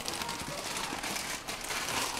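Coffee beans being crushed by hand in a plastic bag, used in place of a grinder: a steady crackling and crinkling of plastic with small cracks of beans breaking.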